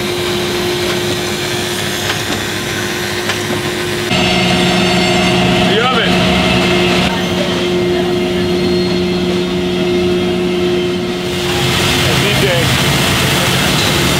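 Steady hum and whir of industrial bakery production-line machinery: conveyor belts carrying dough balls and the equipment around them. About four seconds in, the hum turns louder, with a deeper and a higher tone, and it shifts again later.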